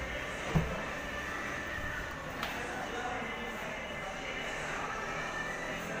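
A single clunk from a Daihatsu Terios's driver's door about half a second in as its handle is pulled to unlock and open it, then a fainter click a couple of seconds later, over a steady background hum.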